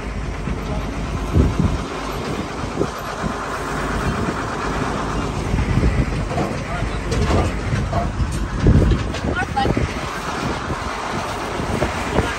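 Farm tractor towing a passenger wagon at low speed: a steady low engine rumble with the wagon rattling and a few sharp knocks, the loudest about a second and a half in and near nine seconds.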